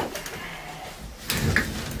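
Quiet room noise with a short knock and rustle a little past halfway, as a person sits down on a chair.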